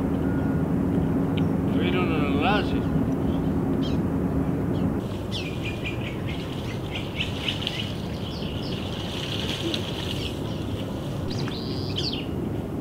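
Birds calling and chirping over a steady outdoor rumble, with a wavering whistle about two seconds in and a busy stretch of high chirps in the second half. For the first five seconds a steady low motor hum runs underneath, cutting off suddenly at a cut.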